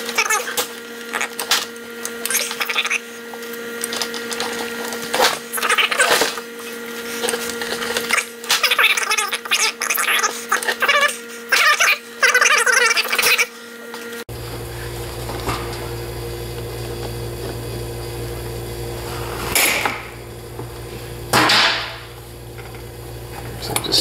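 Fingers handling and prying at the crimped metal sleeve of an electric heater's tip-over safety switch: irregular clicks and scrapes of metal and plastic parts over a steady hum. About fourteen seconds in the background changes abruptly to a lower hum, with only a few clicks after it.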